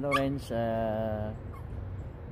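A dog whining, with a couple of short high whines near the start, over a man's drawn-out hesitant "uh".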